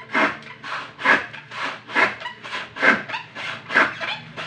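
Handsaw cutting wood in steady back-and-forth strokes, about two a second, with every other stroke louder.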